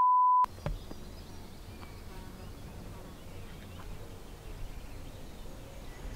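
A steady high test-tone beep, the kind laid under television colour bars, cuts off about half a second in. It is followed by a faint open-air background with insects buzzing.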